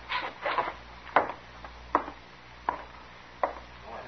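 Radio sound-effect footsteps: boot heels knocking on a wooden floor, slow and even, about one step every three-quarters of a second, after a couple of scuffing sounds at the start.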